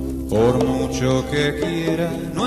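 Slow live ballad: a male voice sings long, gliding notes over acoustic guitar and electric bass.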